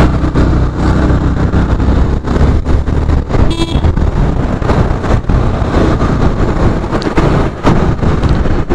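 Yamaha FZ-V3's 150 cc single-cylinder engine running with wind and road noise while riding in traffic. A vehicle horn toots briefly about three and a half seconds in.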